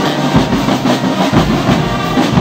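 A brass band of trumpets and trombones playing over a steady drum beat of bass drum and snare, about three beats a second.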